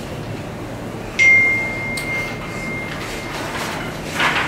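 A single high-pitched ring starts suddenly about a second in and dies away over about two seconds. It sits over a steady room hum.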